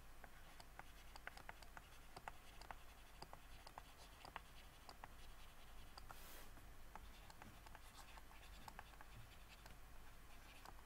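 Faint taps and scratches of a pen stylus writing on a graphics tablet, an irregular run of small clicks as each stroke of handwriting is made.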